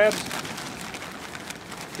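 Brown butcher paper crinkling as it is handled and unwrapped from a bundle of snow crab legs.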